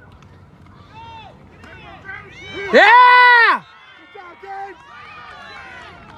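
Spectators shouting and cheering from the sideline during a youth football play, several voices overlapping. About three seconds in, one high voice lets out a long yell that rises, holds and falls, louder than everything else.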